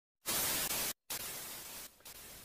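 Static hiss used as a glitch sound effect: one burst starts about a quarter second in and cuts off dead just before the one-second mark. A second burst follows a moment later and fades away.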